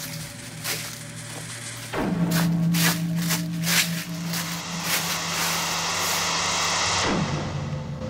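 Eerie background music: a held low drone that swells louder about two seconds in and slides down near the end, with a run of evenly spaced footsteps over it.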